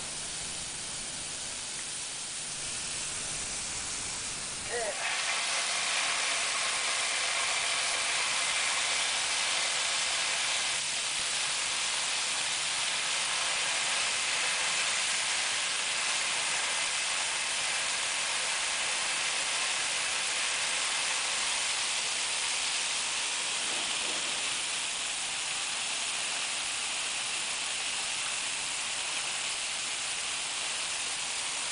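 Water spraying hard from a garden-hose nozzle fitted with a pressure gauge, played against a building wall and window in a water test for leaks: a steady hiss that gets louder about five seconds in and then holds.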